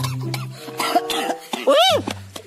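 A man coughing as if choking, ending in one strained vocal cry that rises and falls near the end, over background music with a steady low note.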